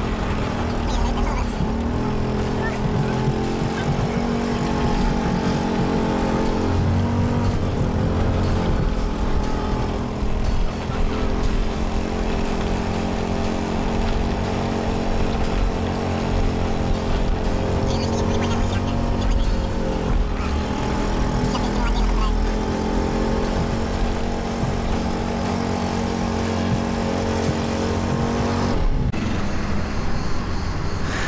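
A small resort cart driving along paved paths. Its motor hums steadily over road rumble and wind, the pitch shifting a few times, and the sound drops away near the end as the ride comes to a stop.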